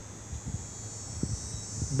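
Pause in speech: a steady high-pitched insect chorus, with a low hum underneath.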